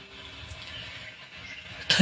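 A lull in the guitar-led backing music: the last held guitar note fades out early on, leaving a faint steady hiss, until the music cuts back in sharply just before the end.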